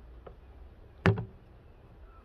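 A faint tap, then a single sharp plastic knock about a second in, as the hinged seat of a composting toilet is lifted back against its lid.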